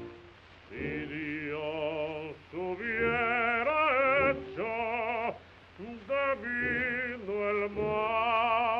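Operatic baritone singing a drinking song, held notes with a wide vibrato, in short phrases broken by brief pauses, the first just after the start. It is an early gramophone recording from 1927, so the top end is cut off.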